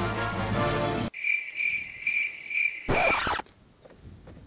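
Background music stops abruptly about a second in, and crickets take over, chirping in a steady high pulse about twice a second. A short louder noise comes near the end, then near silence.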